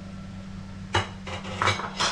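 Kitchen utensils clattering against a pan and dishes: a sharp clack about a second in, then a quick cluster of clinks and knocks near the end, over a steady low hum.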